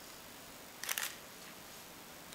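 A brief cluster of sharp clicks about a second in, over faint room tone.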